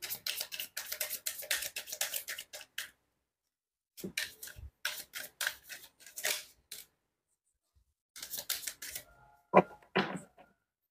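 Tarot cards being shuffled by hand: quick runs of papery clicks and flicks in three bursts with short pauses between, and a single louder tap near the end.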